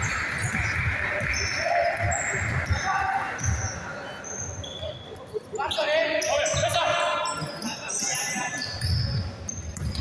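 Basketballs bouncing on a hardwood gym floor, repeated thuds roughly every half second, with short sneaker squeaks, echoing in a large sports hall. Players' voices and shouts join in from about halfway through.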